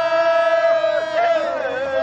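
Men singing a traditional Korean folk work song in the open air: one long held note, with other voices coming in with wavering lines about a second in.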